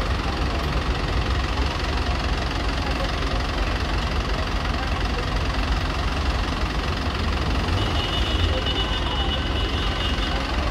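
A city minibus engine idling at a stop amid street traffic, a steady low rumble. A faint high-pitched whine joins about eight seconds in.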